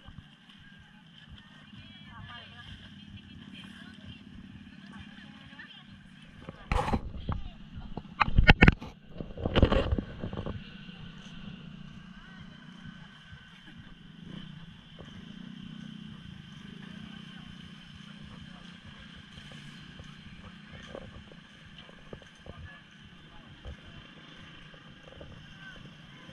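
Outdoor ambience of indistinct voices of people nearby, with a steady low background hum. About seven to ten seconds in, three or four loud rumbling bumps stand out, the loudest sounds here.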